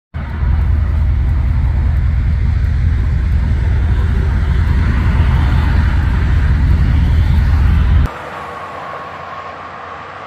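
Loud low rumble of nearby freeway traffic, which cuts off abruptly about eight seconds in and gives way to a quieter, steady hiss of traffic further off.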